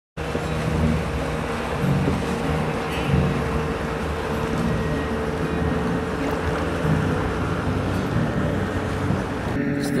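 Steady motor drone holding one pitch, mixed with wind and water noise. It cuts off abruptly just before the end.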